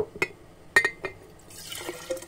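Vinegar handled and poured in glass canning jars to sterilise them: a few sharp glass clinks in the first second, then liquid splashing as it is poured into a jar near the end.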